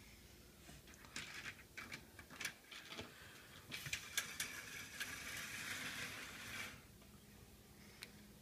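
Faint scattered clicks, then about three seconds of rustling and clacking as vertical window blinds over a balcony door are pushed aside.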